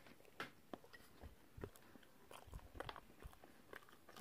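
Faint chewing of a mouthful of peanut butter and jelly sandwich: soft irregular crunches and mouth clicks, a few to the second.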